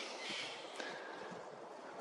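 Quiet outdoor background: a faint, steady hiss of wind with a few small ticks.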